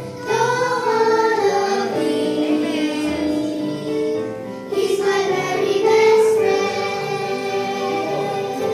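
A small group of young girls singing a Christian song together into handheld microphones.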